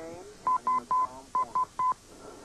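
Six short electronic beeps, all at one pitch, on a 911 call's telephone line. They come in two groups of three, and the last beep of each group is longer.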